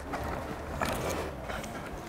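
A quiet, steady low rumble, with a few faint soft rustles from the climber moving on the rock about a second in.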